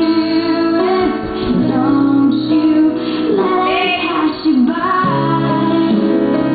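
Recorded song playing: a woman's voice sings a melody that slides between notes, over sustained instrumental chords.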